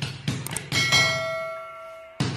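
Background music with a steady beat breaks off, and about a second in a bright bell ding rings out and slowly fades away. It is a notification-bell sound effect laid over a subscribe-button animation.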